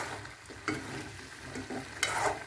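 A slotted metal spatula stirs cut moringa drumstick pieces through thick masala in a metal pan over the heat, scraping the pan. About two-thirds of a second in there is one sharper knock of the spatula against the pan.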